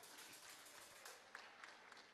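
Faint applause from an audience, a spread of irregular hand claps.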